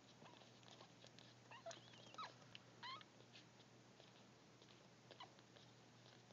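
Faint, short squeaks and whimpers from week-old Chinese Crested puppies while they nurse, a few of them close together around the middle, with soft small clicks throughout.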